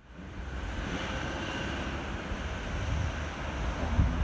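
Railway train running at a distance: a steady low rumble that slowly grows louder.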